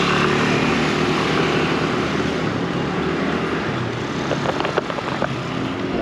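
Motor scooter traffic: small engines running with a steady hum under an even rush of road and wind noise, with a few light clicks a little after the middle.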